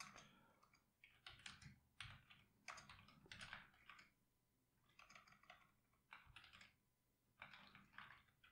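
Faint typing on a computer keyboard: short runs of keystroke clicks with brief pauses between them.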